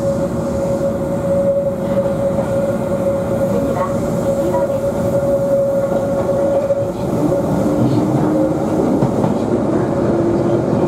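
Keihan Ishiyama-Sakamoto Line electric train running along the track, heard from inside its rear cab: steady running noise with a whine that fades about seven seconds in and gives way to a lower tone.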